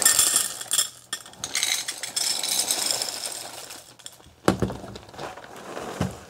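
Dry ring cereal rattling as it is poured from the box into a bowl, a dense patter of pieces for about three seconds. A single sharp knock follows about four and a half seconds in.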